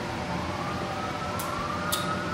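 A distant siren wailing, its pitch sliding down and then slowly back up, over a steady background hum. Two short clicks near the end.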